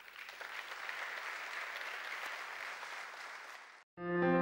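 Audience applauding: dense, steady clapping from a full hall that swells in just after the start and is cut off abruptly shortly before the end.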